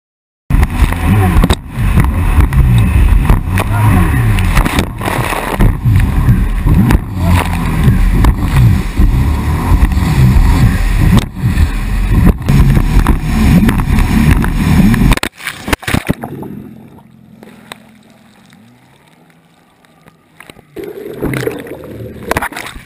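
Jet ski engine running hard through swell, its note rising and falling, with rushing wind and water noise on the camera. About fifteen seconds in the sound drops off abruptly to a muffled low hum, as the camera goes into the water when the rider comes off.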